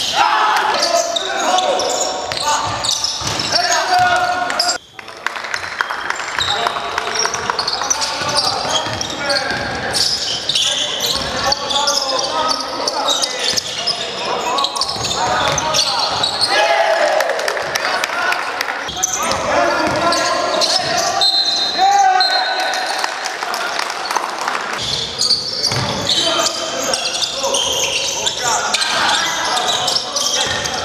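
Basketball game in a large sports hall: players' voices and shouts echoing, with a basketball bouncing on the court floor and short sharp knocks and squeaks of play.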